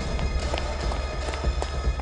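Background music with a deep, steady low rumble, over hurried footsteps on a staircase: sharp, irregular steps about two or three a second.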